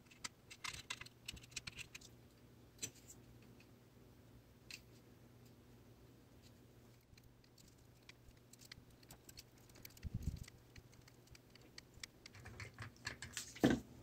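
Faint, scattered small clicks and taps of hand tools (a flux syringe, a soldering iron, a small brush) handling an instrument cluster circuit board on a silicone bench mat, with a brief low thump about ten seconds in and a quicker run of clicks near the end.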